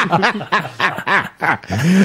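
Men laughing, a run of short, voiced laughs.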